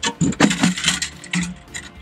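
Knocks and scrapes of a plastic two-gallon fuel tank being handled and pushed down into a fiberglass bracket, a quick run of separate taps and clatters.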